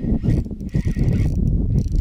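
Spinning reel being cranked during a lure retrieve, with a steady low rumble and irregular knocking from the reel and handling close to the microphone.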